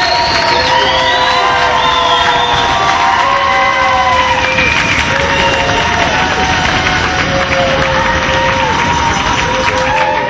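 A large crowd cheering, shouting and whooping, a dense loud din with many voices calling at once.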